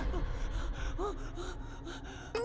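A cartoon zombie boy's voice making a series of short, breathy gasps.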